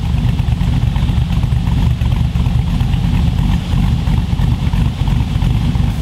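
GM LS V8 fitted with an aftermarket camshaft, idling steadily and heard at the exhaust. The car is shown as the video introduces the VCM21 cam, the grind with the most noticeable idle of the three.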